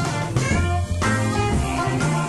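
Electric blues band playing an instrumental passage: guitar lead over bass and drums at a steady tempo.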